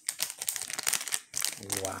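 Foil-plastic Hot Wheels Mystery Models blind-bag wrapper crinkling as it is handled, a quick crackly run lasting about a second and a half.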